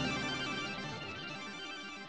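Band music carried by sustained keyboard tones, fading out steadily.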